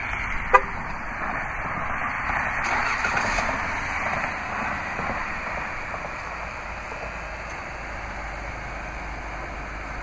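A short horn chirp about half a second in, then the Jeep Grand Cherokee's 3.6-litre Pentastar V6 started by remote start and running, a little louder for the first few seconds before settling to a steady idle.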